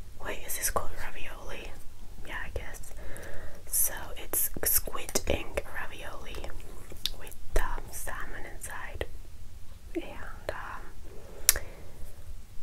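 Close-miked eating sounds: soft, breathy mouth and chewing noises heard much like whispering, broken by sharp clicks of a metal fork on a ceramic plate.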